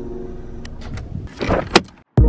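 Low, steady rumble inside a car, with a rustle and a sharp click about a second and a half in.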